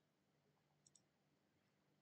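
Near silence, with one faint computer-mouse click, a quick press-and-release pair, a little under a second in.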